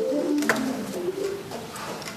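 Low held notes from a duo of wind instruments fade out over about a second and a half, leaving the hall's reverberation, with one sharp click about half a second in.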